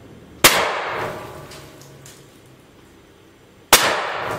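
Two shotgun shots about three seconds apart, each a sharp bang followed by about a second of room echo.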